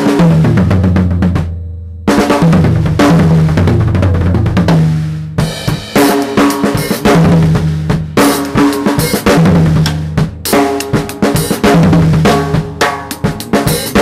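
Acoustic drum kit played in fast triplet fills around the snare and toms with the kick drum. The runs come again and again, each starting with a cymbal crash.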